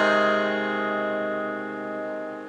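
Telecaster-style electric guitar letting a strummed chord ring out, the chord slowly fading with no new strums: the closing chord of the song.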